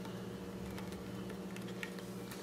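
A few faint, light clicks from small reloading-press parts being handled, over a steady low electrical hum.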